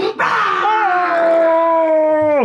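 A person's long, drawn-out vocal cry: a short raspy start, then a single pitch that steps up slightly under a second in and is held steadily.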